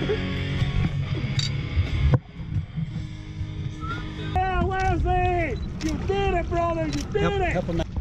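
Background music that cuts off abruptly about two seconds in. Then low wind and water noise on an open boat, with a string of short, high shouted calls from the crew.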